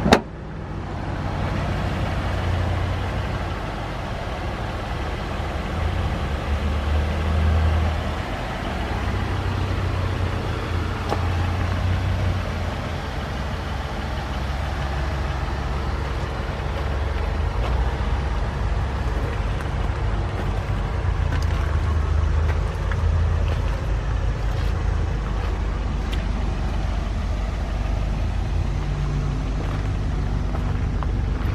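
2008 Buick Lucerne's 4.6-litre Northstar V8 idling steadily, its low rumble swelling and fading as it is heard from around the car. A single sharp bang at the very start, from the hood being shut.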